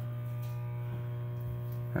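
A steady low electrical hum with a row of fainter, higher steady tones above it, unchanging throughout.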